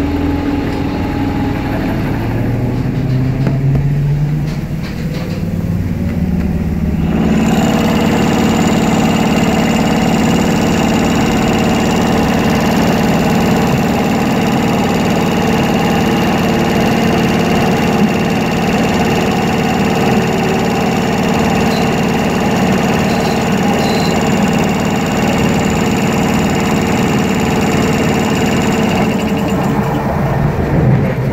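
Electric traction motor of a Ganz MXA HÉV electric train running, heard through an open floor hatch. A low hum rises in pitch over the first few seconds as the train accelerates. About seven seconds in it turns suddenly louder and stays steady, a motor whine with rushing running noise.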